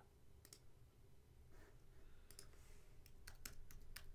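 Faint computer clicks: a single mouse click about half a second in, then a run of keyboard keystrokes in the second half as a word is typed.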